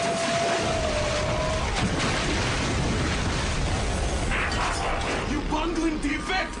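Action sound effects of collapsing ice and blasts, a dense continuous rumble with scattered sharp cracks. A long held cry runs over it for the first second and a half.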